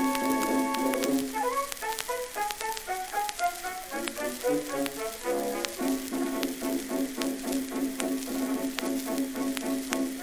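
Orchestral introduction on a 1904 Victor acoustic-era 78 rpm disc, with the crackle and clicks of the record's surface noise throughout. A held low note gives way at about a second and a half to a quick running tune, and the held low note returns about six seconds in.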